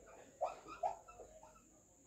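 Marker pen squeaking faintly on a whiteboard as a word is written, a few short squeaks in the first second and a half.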